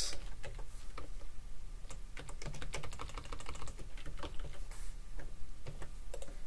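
Typing on a computer keyboard: a quick, irregular run of key clicks as a line of code is entered.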